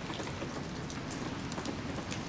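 Steady rain, an even hiss broken by irregular small ticks of drops hitting nearby surfaces.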